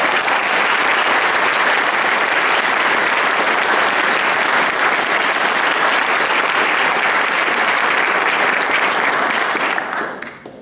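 Audience applauding loudly and steadily: the clapping breaks out suddenly and dies away just before speech resumes.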